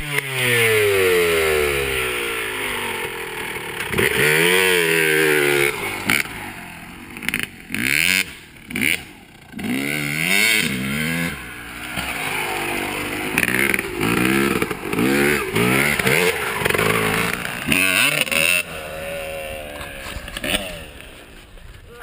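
Motocross dirt bike engine revving up and down as it is ridden around close by. Its pitch swings repeatedly as it accelerates, backs off and passes near, and it fades away near the end.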